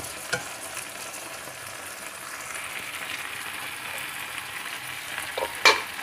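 Dried red chillies frying in a little oil in a nonstick kadai, with a steady sizzle as a wooden spatula stirs them. A sharp knock sounds near the end.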